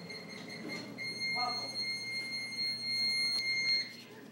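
Waffle maker's ready beeper sounding a steady, high electronic tone that cuts off shortly before the end, just after a brief click.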